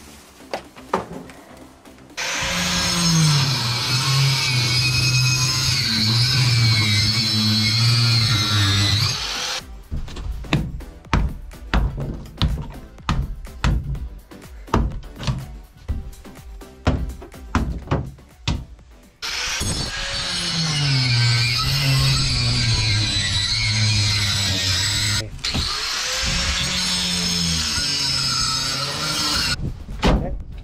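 Background music plays in two stretches. Between them, for about ten seconds, comes a run of irregular hammer blows knocking old wooden stringers out of a fibreglass boat hull.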